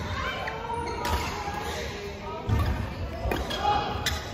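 Badminton doubles rally: players' feet thumping on the court floor and rackets striking the shuttlecock, with the sounds echoing around a large hall.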